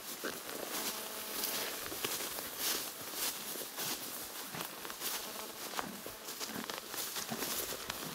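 A horse walking through tall grass and weeds: stems rustling and swishing against its legs, with soft, irregular hoof steps on the grassy ground.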